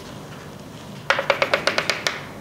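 Chalk tapping against a blackboard in a quick run of about nine sharp clicks, roughly ten a second, starting about a second in, as a curve is drawn.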